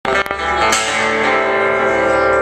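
Live band playing, led by guitar chords ringing out as a song begins.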